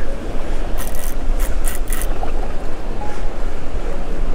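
Wind rumbling on the microphone over choppy sea water around a small boat, with four short high hissing bursts between about one and two seconds in.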